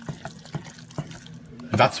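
Thick macaroni and cheese being stirred with a wooden spoon in a pan, making wet, sticky smacking sounds, a few soft clicks spread through the stirring.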